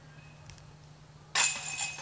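A disc golf putt hitting the metal basket about a second and a half in: a sudden clank with a ringing, jingling tail from the rim and chains as the disc dances off the rim and drops into the basket.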